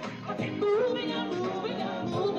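A woman singing a gospel song with a band, holding sustained notes with a wavering vibrato over the accompaniment.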